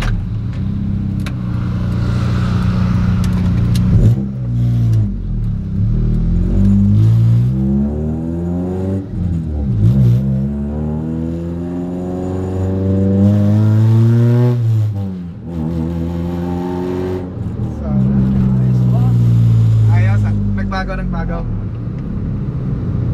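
A freshly tuned car's engine heard from inside the cabin, accelerating hard: its pitch climbs and drops back several times as it is run up through the gears, with the longest pull in the middle. It holds steadier near the end.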